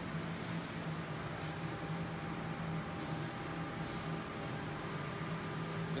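Steady low electrical hum and hiss from running electronic roulette machine cabinets, while a banknote is fed into the machine's bill acceptor and taken in as credit.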